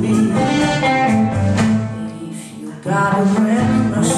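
Live blues band playing, with women singing over electric guitar, bass and drums. The band drops back briefly past the halfway point, then comes back in full.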